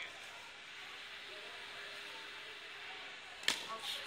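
Faint outdoor chatter and murmur, with a single sharp knock about three and a half seconds in, a hit during a ball game on the lawn.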